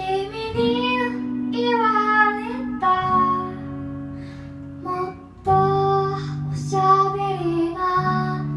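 A woman singing live to her own acoustic guitar, strummed chords held and re-struck every two to three seconds under her sung phrases, with a short break in the voice about halfway through.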